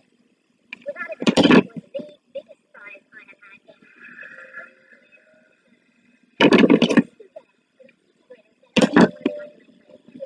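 Faint voices from a television playing in the background, broken by three short, loud bursts of noise.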